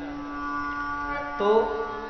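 Hand-pumped harmonium sounding steady held reed notes over one constant lower drone tone that carries on throughout.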